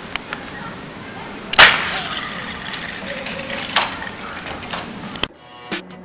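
Outdoor background noise broken by a sharp knock about a second and a half in and a smaller one near four seconds. Near the end the noise cuts out and music with a drum beat starts.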